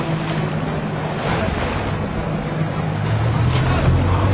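A boat's engine running with a steady low hum, growing somewhat louder near the end, under a haze of wind and choppy water.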